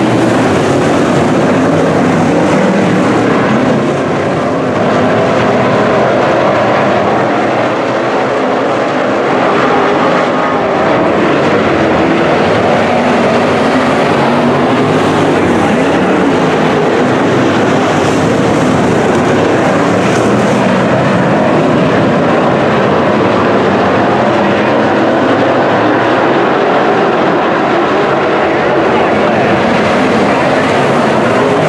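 A field of WISSOTA Midwest Modified dirt-track race cars at racing speed, their V8 engines loud and continuous as the pack circles the track.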